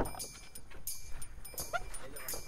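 An SUV's door latch clicks open sharply, followed by handling and rustle as someone climbs into the driver's seat. A short rising chirp comes near the end.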